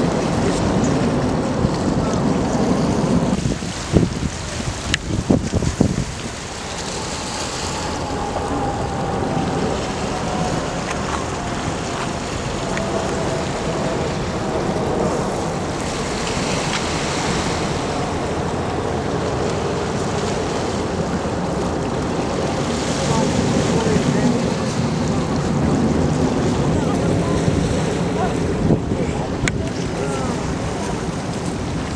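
Distant roar of the Blue Angels' F/A-18 Hornet jets in formation flight, a steady rushing sound with a thin whine that slowly falls in pitch as they pass, starting a few seconds in. Wind knocks on the microphone a few times shortly before that.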